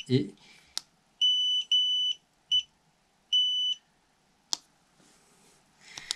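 Xiaomi M365 Pro electric scooter's dashboard beeper sounding error code 21: two long high beeps and a short one, then another long beep about a second later. The code signals a communication fault with the battery management system (BMS). Two faint clicks fall between the beeps.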